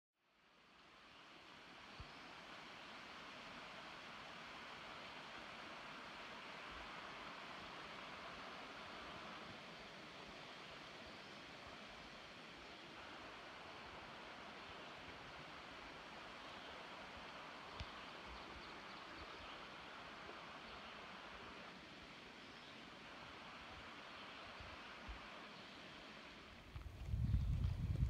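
Steady rush of a small rocky mountain creek, fading in at the start. Near the end, a louder low rumbling noise on the microphone takes over.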